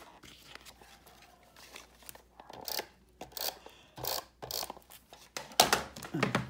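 Paper and cardstock being handled on a cutting mat: a handful of short rustles and scrapes, the loudest near the end.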